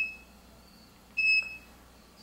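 IntelliQuilter computer guidance system for a longarm quilting machine beeping twice, two short high electronic beeps about a second and a half apart, each one confirming a point marked on the block.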